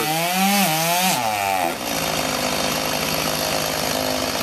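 Chainsaw cutting through an oak trunk, its engine note wavering under load. About a second and a half in the revs drop and the saw settles into a steady idle, with the bar pinched in the cut.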